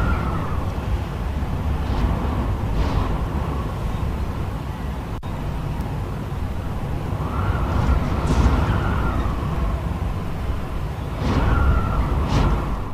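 Strong wind sound effect for a hurricane: a steady roar of wind with howling gusts that swell and fade every few seconds.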